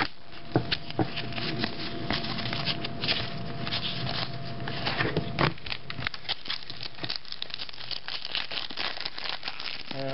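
Plastic trading-card pack wrappers crinkling and tearing as packs of football cards are opened and the cards handled, a steady run of small sharp crackles.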